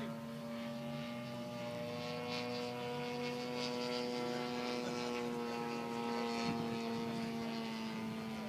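Gasoline-engined radio-controlled Pitts Special model biplane in flight, its engine and propeller giving a steady drone whose pitch wavers slightly.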